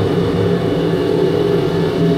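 Oil-fired industrial container washer running, its motor, pump and burner giving a loud, steady mechanical drone with a low hum.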